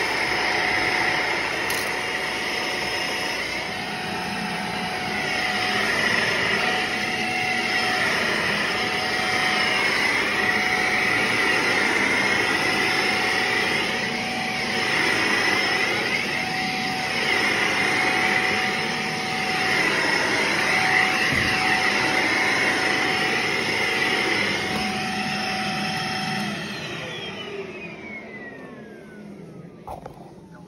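Shark bagless upright vacuum cleaner running on carpet: a steady motor whine over rushing suction, its sound wavering as it is pushed back and forth. Near the end it is switched off and the motor winds down in a falling whine.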